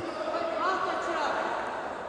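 Distant, echoing voices of players and spectators in an indoor futsal hall, a faint call rising and falling about halfway through over a steady background haze.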